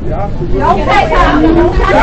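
Several people's raised voices talking over one another in an argument, loud and overlapping, over the steady low rumble of a subway car.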